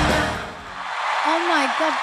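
Live concert music of a band with a woman singing lead, cut off about half a second in. After a brief lull a single woman's voice exclaims "Oh my god" in the last second.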